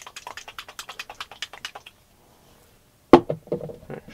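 Paintbrush scrubbing quickly back and forth on the canvas, a fast run of short scratchy ticks, then after a pause a sudden loud knock and clatter of plastic acrylic paint bottles as one is taken from the rack.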